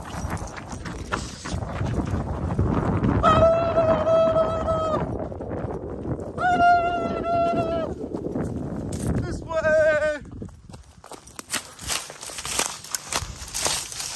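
Dog baying: three long, steady, high howls, about a second and a half each, the last one shorter and wavering. Rustling of dry grass and brush as it runs through the undergrowth.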